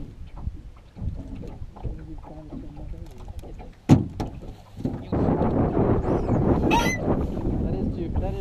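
Wind on the microphone and water against a small fishing boat, with faint voices in the first half and one sharp knock just before four seconds in. From about five seconds in the wind and water noise becomes much louder and steadier.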